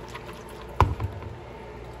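Water draining and dripping from cooked noodles in a plastic colander, with one sharp knock a little under a second in.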